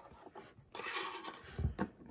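Plastic blister packaging rustling and rubbing as a small die-cast toy tractor is worked out of it, starting about a second in, with a light knock near the end.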